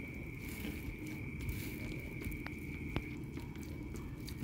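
Fried tempe being smashed into chilli sambal with a wooden pestle in a clay mortar: quiet, soft squashing, with two light clicks in the second half.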